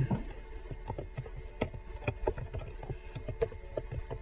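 Typing on a computer keyboard: an irregular run of keystroke clicks as text is entered into a field.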